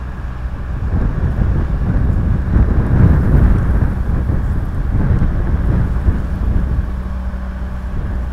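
Wind rumbling on an outdoor microphone: a loud, uneven low rumble that swells in the middle and stops abruptly near the end.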